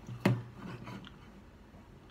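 A single sharp click about a quarter second in, followed by a few faint soft handling sounds, in an otherwise quiet pause just before the acoustic guitar comes in.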